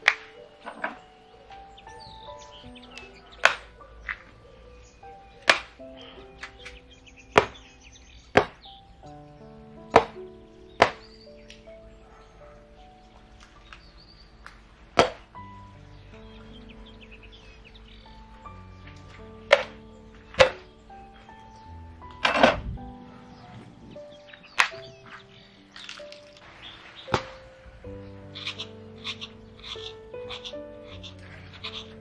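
A cleaver chopping into a husked coconut: about a dozen sharp chops, irregularly spaced a second or more apart, over soft background music. Near the end come quicker, lighter strokes as the coconut flesh is scraped out of the split shell.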